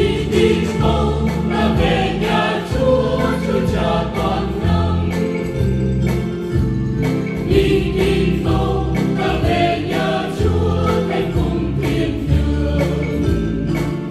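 A choir singing the refrain of a Vietnamese Catholic hymn in Vietnamese, with instrumental accompaniment of sustained chords and a bass line.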